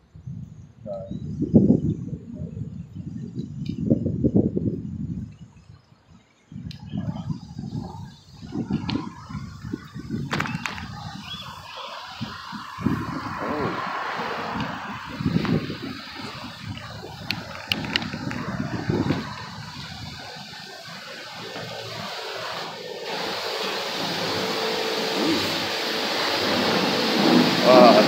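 Wind buffeting the microphone in irregular low gusts while it moves along the street. Over the last several seconds this gives way to a steadier hiss that slowly grows louder.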